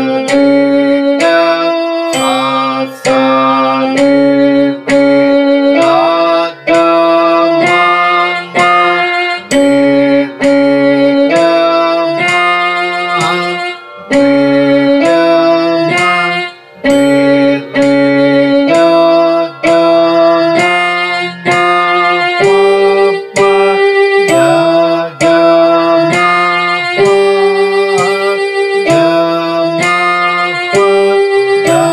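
Electronic keyboard playing the Carnatic janta swaram exercise, a single melody line in which each note is played twice in a row. The notes follow one another at a steady, unhurried pace, and a few of them slide in pitch.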